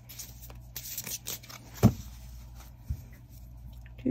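A mini tarot deck being shuffled by hand, with cards sliding together and giving soft scattered clicks and taps. The sharpest tap comes a little under two seconds in.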